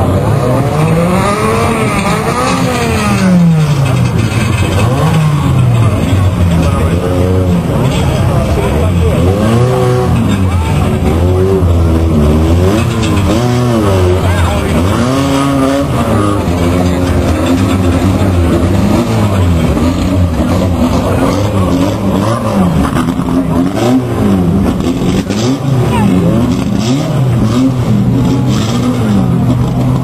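Several banger racing cars' engines running at once, their notes repeatedly rising and falling as the drivers rev, lift off and pass at different distances.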